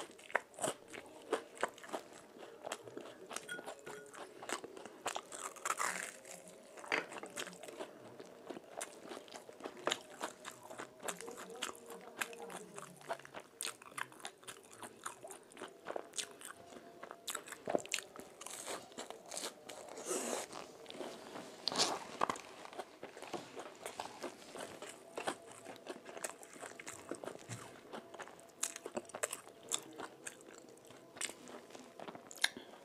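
Close-miked crunching and chewing of crisp fried food, mainly Mughlai paratha. There are many small sharp crackles as pieces are torn and bitten, in irregular runs throughout.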